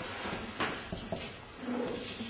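Felt-tip markers scratching across paper in quick, repeated strokes as text is scribbled over a dense drawing, with a brief squeak near the end.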